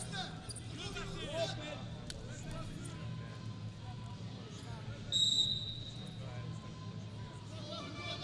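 A referee's whistle gives one short, sharp blast about five seconds in, stopping the wrestling action; it is the loudest sound. Around it is arena ambience: a steady low hum with scattered shouting voices early on.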